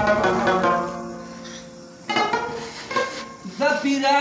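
Pashto ghazal music on a plucked string instrument. The ringing notes die away over the first two seconds, the strings strike in again about halfway, and a man's singing voice comes back in near the end.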